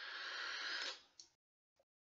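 Long drag on a vape through a Griffin rebuildable tank atomizer: a soft, steady hiss of air pulled through the airflow and over the firing coil, swelling slightly, then stopping about a second in as the draw ends.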